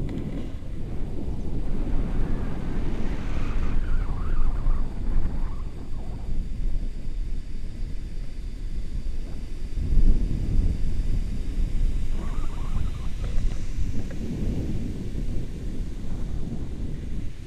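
Wind rushing over an action camera's microphone in paraglider flight: a steady low rumble with a stronger gust about ten seconds in.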